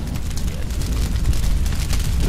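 Fire sound effect: a deep rumbling roar with dense crackling, growing steadily louder.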